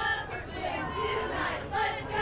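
High school cheerleaders shouting a cheer in unison, the words chanted in a steady rhythm.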